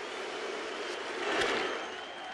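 Stadium crowd noise from a large ballpark crowd, swelling about a second and a half in as the bat meets the ball on a ground ball.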